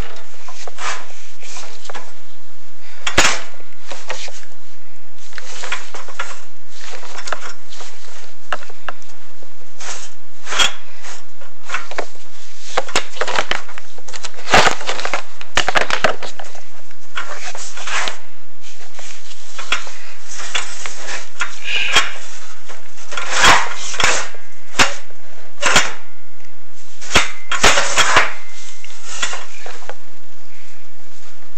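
Irregular scraping and knocking as a chimney inspection camera is fed down a metal wood-stove flue, its head and cable rubbing and bumping against the sooted pipe walls. The scrapes come in uneven bursts, with the strongest ones around the middle and near the end.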